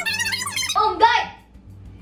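A high-pitched woman's voice exclaiming over background music. The voice stops a little after a second in, and the music carries on alone.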